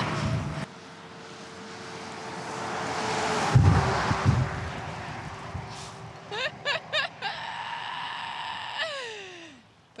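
A lorry passing on the highway, swelling and fading, with wind gusting on the microphone. Then several short rising squeals and a held cry that falls away near the end.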